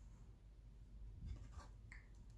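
Near silence, with faint rustling and scraping of an oracle card being picked up from the table about a second in.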